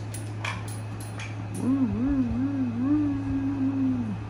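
American Pit Bull Terrier whining: one low voice that wobbles up and down several times, then holds and drops at the end. A few sharp clicks come before it.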